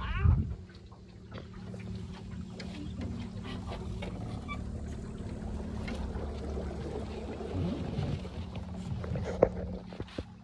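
Electric trolling motor humming steadily as the small boat moves, with water washing against the hull. A brief loud sound falling in pitch comes right at the start, and a sharp knock near the end.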